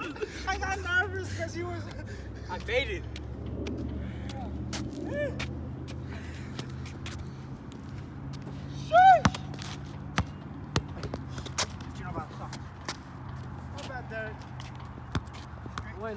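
Voices and one loud shout about nine seconds in, over a low engine hum through the first half. A basketball bounces now and then on the concrete court, making sharp knocks.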